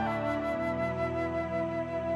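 Flute in a slow jazz ballad, stepping down to a new note right at the start and holding it as one long tone over low sustained accompaniment.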